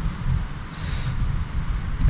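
A pause between spoken phrases: low room rumble, with one short high-pitched squeak about a second in.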